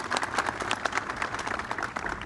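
An audience applauding, many hands clapping steadily.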